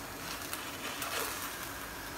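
Faint steady hiss with no distinct sounds in it.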